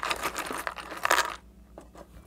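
A hand rummaging through a box of small trinkets and paper tags: a jumble of light clicks, clinks and rustling for about a second and a half, then a few scattered clicks.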